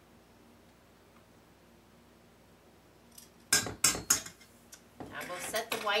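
Metal kitchen utensils clattering against a stainless steel mixing bowl: three sharp clanks in quick succession a little past halfway, after a quiet stretch.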